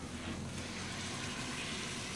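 Steady sizzle of browned lamb mince frying in a pot on the stove.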